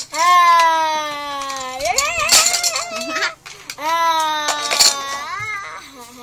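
A high human voice making two long, drawn-out vocal calls, each sinking slowly in pitch and then swinging upward at the end.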